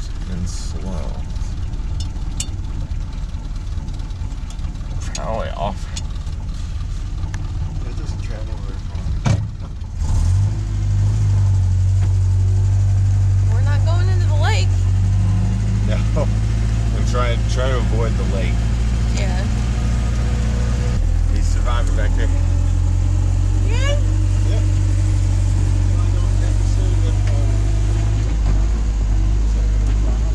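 1973 Land Rover Lightweight's engine running just after a cold start, heard from inside the cab. It runs rough and uneven at first; about ten seconds in it becomes louder and steadier, and its note shifts about twenty seconds in.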